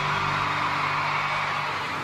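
A live pop-rock band holds a final chord that rings out steadily after the singing stops, with an audience cheering and screaming over it.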